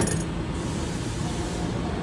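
A single sharp thump as a roughly 25 kg test weight is set down on a Mettler Toledo floor scale's platform, then a steady low background rumble.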